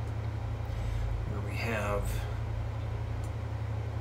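Steady low electrical hum from an idle, amplified electric guitar rig, with a brief murmured word from a man's voice about halfway through.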